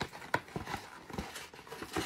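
A cardboard snack box being picked up and handled: a few irregular hollow knocks and taps, with light rustling between them.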